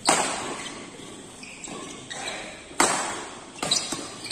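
Badminton rackets striking a shuttlecock in a fast rally: a sharp, loud hit at the start and another about three seconds later, with a few lighter knocks just before the end, each ringing in a large hall.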